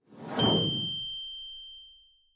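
Notification-bell sound effect: a short swell of noise, then a single bright bell ding about half a second in that rings out and fades over the next second and a half.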